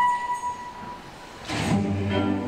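Recorded classical music accompanying a ballet dance: a single held high note fades over the first second, then orchestral music with strings comes in about a second and a half in.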